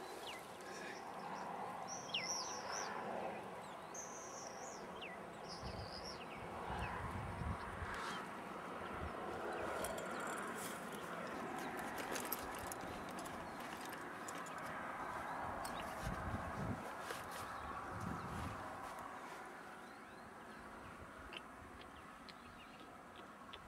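A few short, high bird chirps a couple of seconds in, over a steady hiss of wind across the grass, with low buffeting of wind on the microphone now and then.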